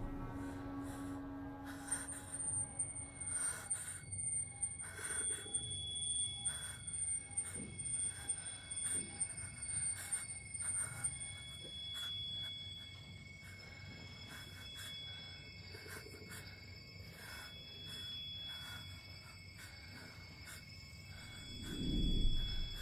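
Suspenseful horror-film score: thin sustained high tones and a pulsing tone that comes back every second or two. Sharp, irregular clicks and hits run through the first half, and the music thins out and grows quieter after about twelve seconds.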